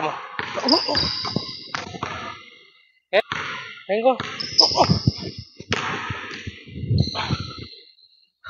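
Basketball dribbled hard on a hardwood gym floor: an in-and-out move followed by a crossover, the bounces ringing in the large hall. Two runs of quick bounces, with a short break about three seconds in, and the dribbling stops near the end.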